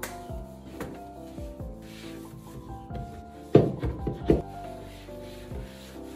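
Wiping and rubbing on a wooden wardrobe over soft background music, with two loud knocks against the wood about three and a half and four seconds in.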